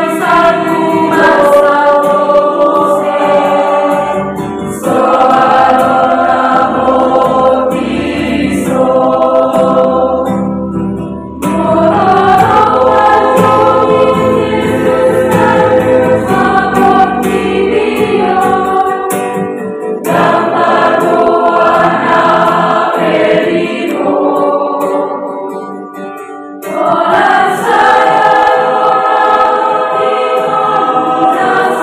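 Mixed youth church choir singing a song in parts, accompanied by a strummed acoustic guitar, with brief dips between phrases.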